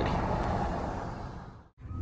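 Steady low hum of a running vehicle heard inside the car cabin, fading out near the end.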